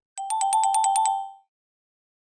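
Electronic ringing sound effect: a rapid trill of about eight strikes a second alternating between two close pitches, like a telephone ring, lasting just over a second and fading out.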